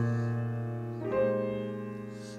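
Grand piano playing two jazz chords of a turnaround, the first struck at the start and the second about a second in, each left to fade, over a low bass note held underneath.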